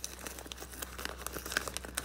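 Clear plastic binder page and card sleeves crinkling as sleeved trading cards are slid into the page's pockets: a run of small, irregular crackles and clicks.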